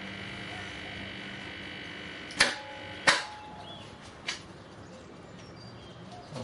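Microwave oven transformer humming under load as it overvolts an opened CFL. About two and a half seconds in come two sharp clicks a little over half a second apart, then a fainter click, and the hum falls away as the current stops.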